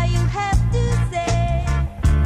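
Reggae-tinged punk band's 1982 demo recording: a steady, heavy bass line under pitched instrument lines, with regular drum hits.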